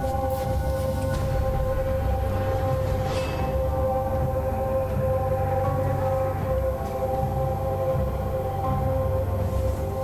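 Eerie background music: several long held droning tones over a low rumble, steady throughout.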